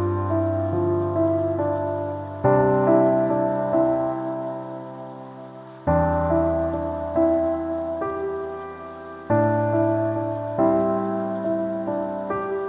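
Slow, gentle piano music: a chord struck about every three and a half seconds, each left to fade, with a few single notes between, over a steady hiss of rain sounds.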